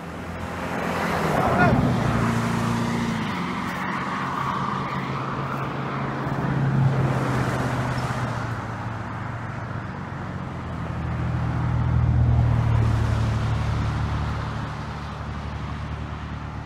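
Motor vehicles on a road: a steady engine and tyre hum that swells as traffic passes, loudest about two seconds in and again around twelve seconds.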